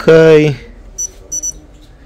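Short electronic beeps from a Lewanda B200 battery tester's membrane keypad as its buttons are pressed: one beep about a second in, then a quick pair.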